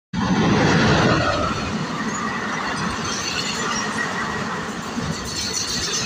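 West Coast Express passenger train running through a station: the steady rumble and rush of the coaches on the track, loudest in the first second.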